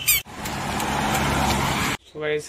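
A brief high chirp, then a steady noise of a motor vehicle running close by, with a low engine hum under road noise, ending abruptly.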